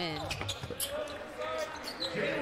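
Basketball bouncing on a hardwood court in the game broadcast audio, a few quick bounces, with a voice partly over it.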